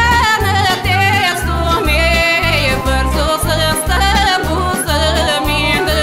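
A woman's voice singing a Bulgarian folk-pop song over band accompaniment, with a steady bass beat of about two notes a second.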